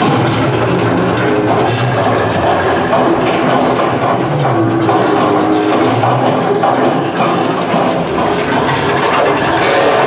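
Loud, dense attraction sound-effects track: a steady mechanical rumble with music mixed in, as played in a simulated-elevator show.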